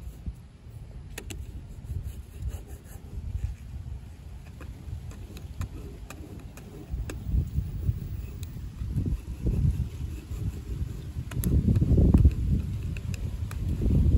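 Low rumble of wind on the microphone, growing louder in the last few seconds, with a few faint ticks and scrapes of a plastic squeegee card being pressed over a vinyl decal on glass.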